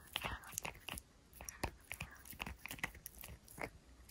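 A tiny poodle puppy gnawing on a hard chew, with irregular crunching and clicking bites several times a second. The chewing comes from a puppy whose teeth seem to itch.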